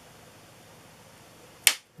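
Faint, steady room hiss, broken near the end by a single sharp click followed by a moment of dead silence.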